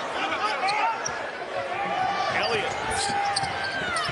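Basketball being dribbled on a hardwood arena court, with short repeated bounces over the murmur of the arena crowd.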